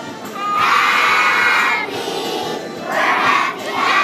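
A group of young children singing loudly together, close to shouting, holding one long note from about half a second in and starting another loud phrase near the end.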